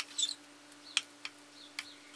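A few sharp, light clicks and a short high squeak from a small tool working a paste-like wood filler in its container, over a faint steady hum.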